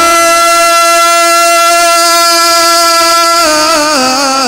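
A man's voice holding one long, steady note of sung devotional verse into a microphone, amplified. Near the end it breaks into a wavering, ornamented line.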